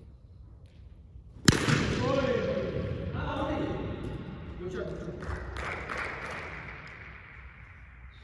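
A cricket bat striking the ball with one sharp crack about one and a half seconds in, ringing in a large echoing hall. Men's voices shout after the hit, with a few lighter knocks among them.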